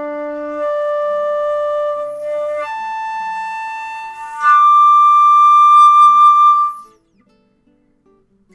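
Flute playing the harmonic series on one fingered low D: the held low D slurs up to the D an octave higher about half a second in, then to the A a fifth above, then to the high D two octaves up. The high D is the loudest note and stops about seven seconds in.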